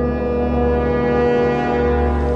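Electric guitar through a Yamaha THR10 amp, one note or chord held with long sustain: it swells up and is then held steady with many overtones.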